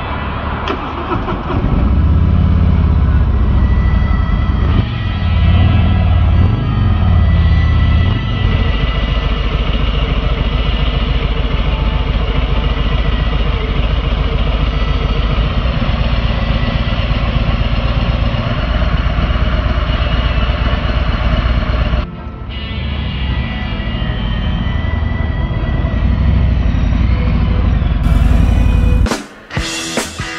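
Harley-Davidson touring motorcycle's V-twin engine starting up and being revved in uneven swells for several seconds, then running steadily with a deep, even beat. A short break comes about two-thirds of the way in, and rock music with drums takes over near the end.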